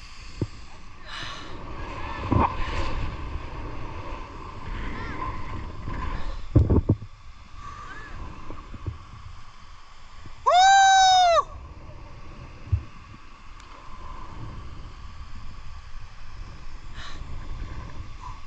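Wind buffeting the microphone of a body-mounted camera, with a couple of knocks about six and a half seconds in. About eleven seconds in comes the loudest sound, a man's yell lasting about a second whose pitch rises and then falls.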